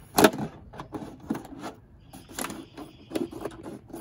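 Scissors cutting through the thin plastic of a milk jug: a run of irregular sharp snips and crackles from the plastic as it is cut, the loudest snip about a quarter second in.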